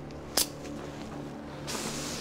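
Switchblade knife snapping open with one sharp metallic click about half a second in, followed near the end by a short hiss.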